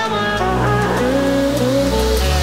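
Background music: a melodic tune over held bass notes.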